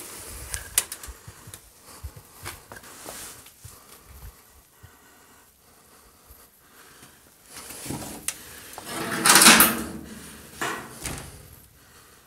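An old door being handled and pushed open, with scattered knocks and clicks, then a loud scrape lasting about a second a little past the middle.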